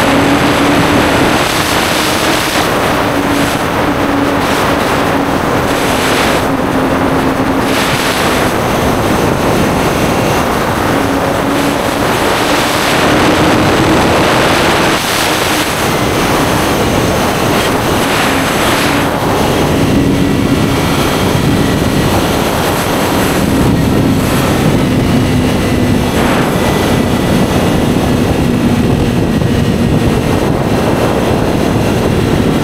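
Honda CBR1000RR's inline-four engine running steadily at cruising speed under loud wind rush. The engine tone wavers slightly in pitch and dips briefly about halfway through.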